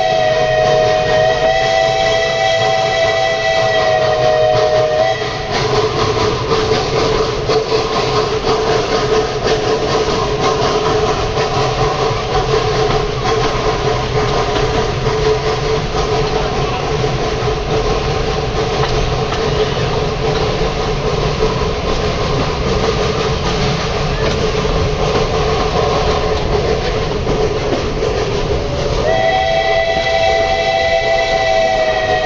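Steam locomotive whistle blowing one long steady chord for about the first five seconds, then the train running with a continuous rattle and clatter of the carriages on the track. The whistle sounds again near the end.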